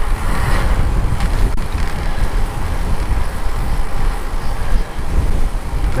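Steady wind noise on a helmet-mounted action camera's microphone while cycling into a headwind, with street traffic underneath.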